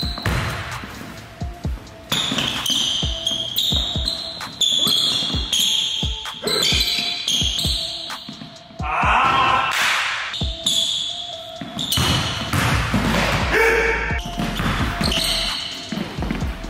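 Basketball dribbled on a hardwood gym floor, bouncing again and again, with music playing under it.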